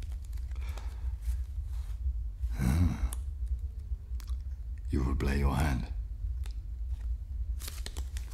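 A man's voice making two short wordless vocal sounds, about three seconds in and again around five seconds, over a steady low rumble, with faint clicks of playing cards being handled.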